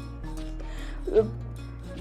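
Background music with held low notes that change twice.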